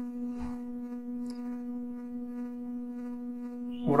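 Steady electrical hum on the recording: one low buzzing tone with a ladder of overtones above it, unchanging in pitch and level.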